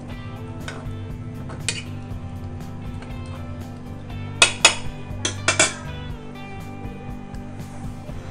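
A metal spoon clinks and scrapes against an aluminium pressure cooker as chopped vegetables are stirred inside it. A few sharp clinks come early, and the loudest cluster of strokes falls about halfway through, over steady background music.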